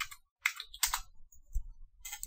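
A few separate keystrokes on a computer keyboard, short sharp clicks about half a second apart, typing a search.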